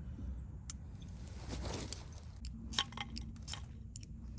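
A brand-new ferro rod, not yet broken in, scraped with its striker to throw sparks onto a cotton-disc fire starter: one longer rasping scrape before the middle, then a quick run of short scrapes and clicks in the second half, with light clinking of the rod and striker.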